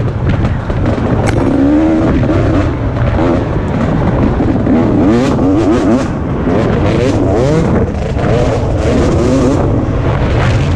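2017 KTM 250 XC-W two-stroke dirt bike engine revving hard under load, its pitch climbing and dropping again and again as the throttle is worked through the gears. Wind rushes over the helmet-mounted microphone, with knocks from the rough trail.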